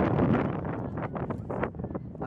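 Wind buffeting the microphone: an uneven low rushing noise with small rustles.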